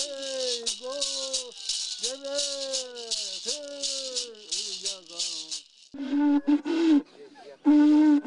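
A man chanting a Bororo naming song in long phrases that each fall in pitch, accompanied by a rattle shaken rapidly and steadily. A little before six seconds in the rattle stops and short held sung notes follow.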